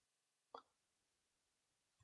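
Near silence: room tone, with one faint short click about half a second in.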